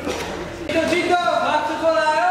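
A man's voice talking, with a brief brushing rustle at the start.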